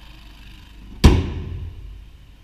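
Hood of a 2016 Chevrolet Cruze slammed shut once, about a second in: a single loud slam that dies away over about half a second.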